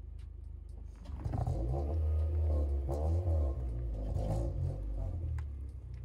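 Honda Civic Si engine idling, then revved up about a second in and held for roughly four seconds before dropping back toward idle.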